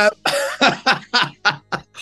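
A person laughing: a quick run of short 'ha' bursts, the first the longest and loudest, with the rest getting shorter toward the end.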